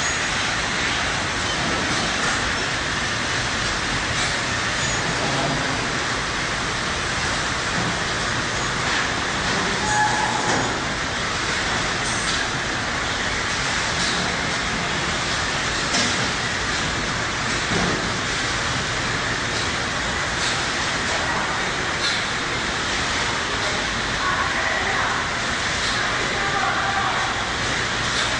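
Steady, even background noise with faint scattered voices.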